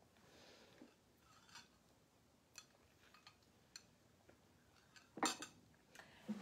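Faint scattered clicks and clinks of a small metal object being handled, a few light taps spread over an otherwise near-silent room, the last few a little louder.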